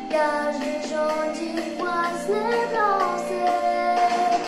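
A young girl's solo voice singing over musical accompaniment, holding long drawn-out notes with slides up and down in pitch.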